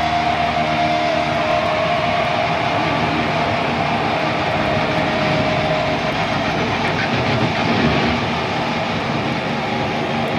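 Loud, steady wash of distorted electric guitar and amplifier noise from a live metal band, with a held tone in the first second.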